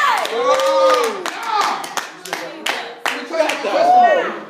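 Hand clapping, sharp irregular claps about three a second, with voices calling out over them at the start and again near the end.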